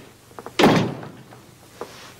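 A door banging shut once, about half a second in, with a short ring-out after it, and a few faint knocks around it.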